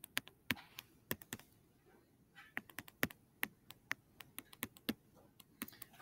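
Stylus tapping and clicking against a tablet screen during handwriting: a faint, irregular series of light clicks, with a short pause about one and a half seconds in.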